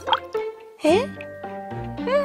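Cartoon plop sound effects over light background music: two quick rising bloops, one at the start and one just before a second in, as something tipped from a box drops into a pot of water.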